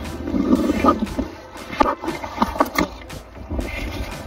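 Wind buffeting a phone's microphone, with a steady low rumble, plus scattered rustles and knocks as the phone is handled and rubbed against clothing.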